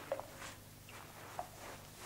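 Faint water drips: a few single drops plinking, spaced irregularly.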